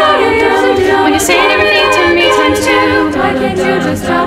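A cappella vocal group singing sustained backing harmonies with no clear lyrics, the singers wearing face masks.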